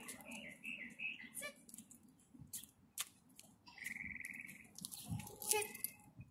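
Small birds calling: a few quick chirps in the first second and a rapid, even trill about four seconds in, with another call near the end. Scattered sharp clicks run through it.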